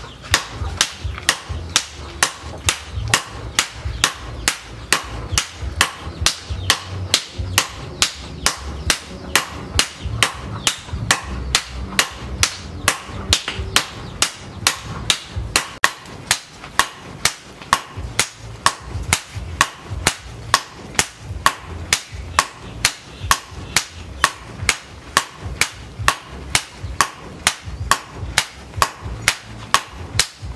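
Two sledgehammers striking red-hot leaf-spring steel on an anvil in turn, a steady run of sharp metal blows about two to three a second as the cleaver blade is drawn out.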